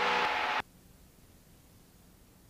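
Steady engine and cabin noise of a light aircraft in flight, heard as a hiss with a few steady hum tones through the headset intercom, cutting off suddenly about half a second in as the intercom's voice-activated squelch closes, leaving near silence.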